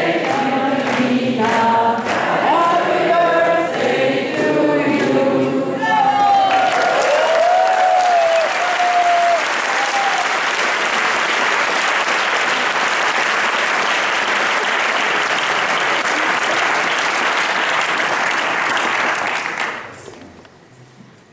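Tango music with singing voices ends about six seconds in, and the audience then claps steadily for over ten seconds. The applause stops shortly before the end.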